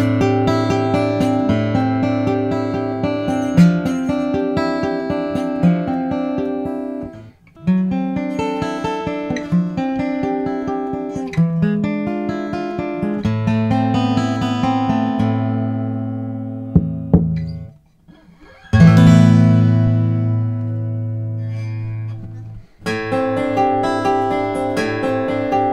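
Two Gibson J-45 acoustic guitars playing strummed chord passages: the natural-finish J-45 Studio first, then the sunburst J-45 Standard. They are recorded through a Cascade X15 stereo ribbon microphone, with short breaks between takes about seven and eighteen seconds in.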